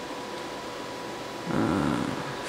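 Computer fans running with a steady hiss, joined near the end by a brief low vocal sound of about half a second whose pitch bends.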